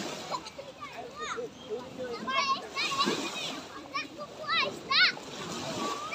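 Small waves breaking and washing up a sandy shore, with children's high-pitched calls and squeals from the water, loudest in short bursts near the middle and about five seconds in.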